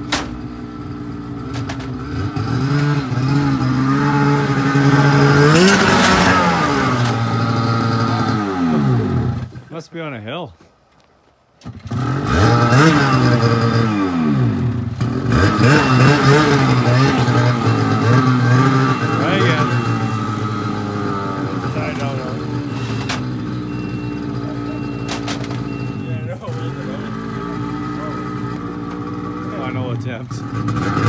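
Ski-Doo snowmobile engine revving up and dropping back several times while the sled is driven at a loading ramp. It breaks off briefly about ten seconds in, revs again, then settles into a steady idle for the second half.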